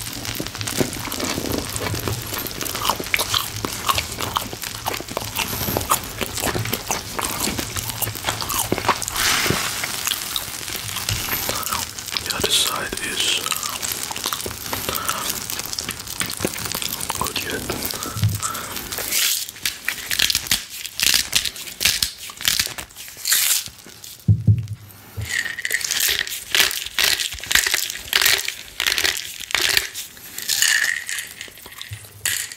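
Close-miked chewing of crusty baguette, with crunches and crackles, over the sizzle of a steak on a hot stone grill. In the last third the sound breaks up into separate clicks and crackles, with one dull thump.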